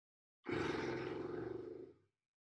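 A woman blowing a raspberry on a long out-breath: a buzzing lip trill that starts about half a second in, lasts about a second and a half and fades away.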